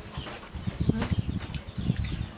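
People eating and chewing close to the microphone, with soft scrapes and clinks of spoons on ceramic plates.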